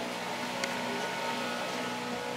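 A steady background hum of running machinery, with a few faint constant tones and no rhythm.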